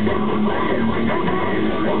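Grindcore band playing live: electric guitar, bass guitar and drums, loud and unbroken.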